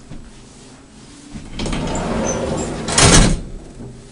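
Elevator door sliding along its track for about a second and a half, then hitting its stop with a loud bang.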